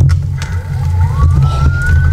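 Electronic power-up sound effect: a whine that starts about half a second in and climbs slowly in pitch, over a loud, deep, pulsing rumble.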